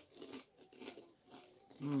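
Two people chewing a crunchy, chip-like snack cracker, with soft, irregular crunches.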